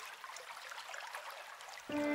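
Faint running water, an even trickling hiss like a stream. Just before the end a chord of sustained music comes in suddenly.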